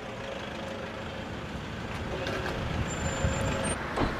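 Steady motor-vehicle engine and road-traffic rumble with no distinct events, a thin high whine showing briefly near the end.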